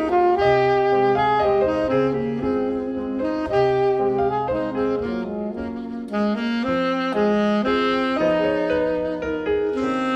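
Alto saxophone playing a flowing melody, note to note, over piano accompaniment with sustained bass notes.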